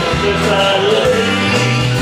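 Live country band playing: electric and acoustic guitars, pedal steel guitar and drums, with a steady beat.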